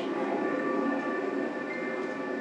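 A music video's soundtrack played over a hall's loudspeakers: a steady, layered drone of held tones with no voice.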